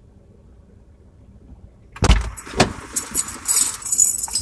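A faint steady hum inside a car's cabin, then about two seconds in a loud burst of clatter as someone gets back into the car: a sharp knock, rustling, and keys jangling.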